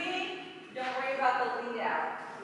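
Speech only: a voice talking, with a short pause about halfway through.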